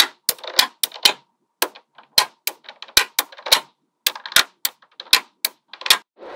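Small metal magnetic balls clicking as they are pressed and snapped onto a slab of other magnetic balls: sharp, irregular clicks a few times a second, some with a brief rattle as loose balls settle.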